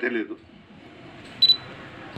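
A man's speech into a microphone trails off, then about one and a half seconds in comes a very short double click with a brief high-pitched tone, over low room noise.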